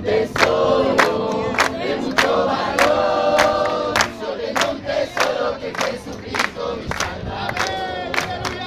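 A congregation singing together and clapping in time, with steady claps a little under two a second.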